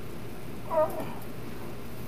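A cat's single short meow.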